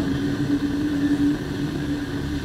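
Steady low mechanical hum with a droning tone, easing slightly about one and a half seconds in.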